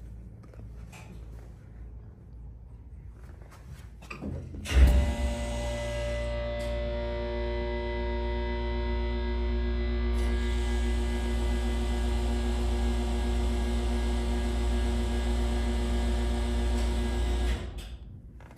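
The hydraulic pump unit of a 1984 Dover hydraulic elevator starts about five seconds in with a sudden surge. It then runs with a steady hum for about thirteen seconds, raising the car, and shuts off near the end.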